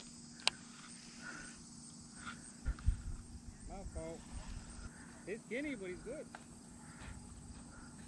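Faint, steady insect chirping, with a sharp click about half a second in and a couple of low knocks near three seconds in. A distant man's voice calls out faintly twice in the middle.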